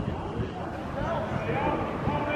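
Indistinct men's voices talking and calling out, over a steady low rumble.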